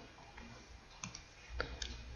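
A few faint, sharp clicks over a low steady hum, about a second in and again near the end, from the pen or mouse drawing a resistor symbol on a computer.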